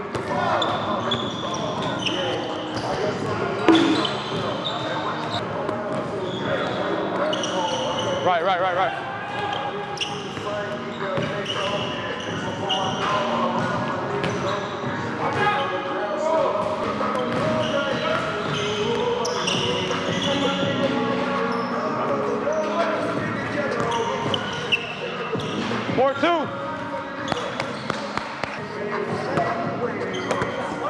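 Basketball dribbling and bouncing on a hardwood gym floor, with sneakers squeaking in many short, high chirps and players' voices calling out, echoing in a large gym.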